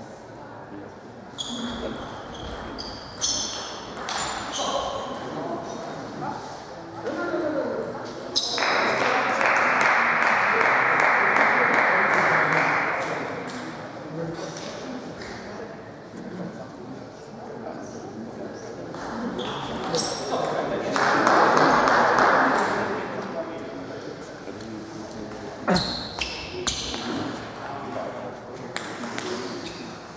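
Large sports-hall ambience with scattered sharp clicks of table tennis balls, short high-pitched squeaks and background voices. A loud, even hiss-like noise comes in twice, for about four seconds near the first third and for about two seconds near the two-thirds mark.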